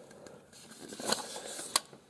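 Handling noise from an O gauge model flat car with metal trucks being turned over in the hands: faint rustling and rubbing, with two small sharp clicks in the second half.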